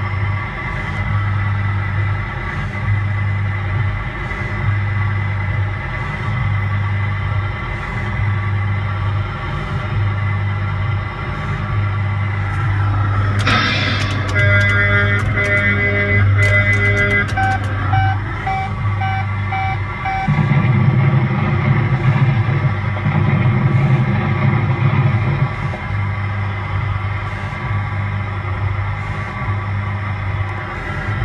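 Coin-operated kiddie ride running, its music playing over a low hum that pulses about once a second. About halfway through, a clatter of clicks is followed by a run of short electronic beeps from its game.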